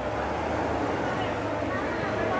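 Indistinct voices of people standing around, over the steady low hum of a school bus engine running close by.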